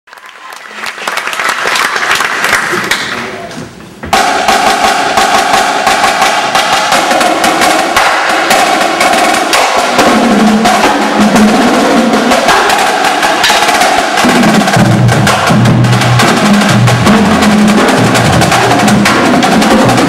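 A marching percussion ensemble plays: a snare line with dense, rapid stick strikes over pitched marimba parts, with bass drums and cymbals. It comes in loud and all at once about four seconds in, after a short swell of noise, and lower, heavier notes join from about fourteen seconds.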